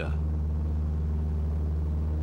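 Aircraft engine heard from inside the cockpit, a steady low drone with faint even tones above it and no change in power.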